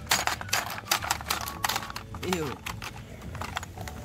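Rapid plastic clicking and clacking from a Hungry Hungry Hippos game board as its hippo levers are pressed and a dog eats treats off it. The clicks are thickest in the first couple of seconds, then thin out.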